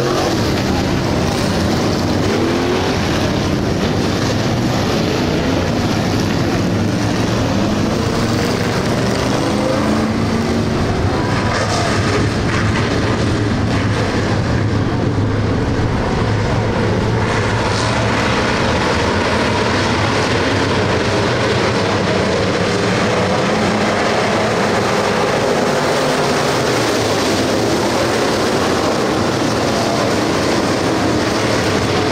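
A pack of dirt-track stock cars running laps together, many engines at once. Their pitches rise and fall as cars pass and throttle on and off through the turns, in a loud, unbroken, steady din.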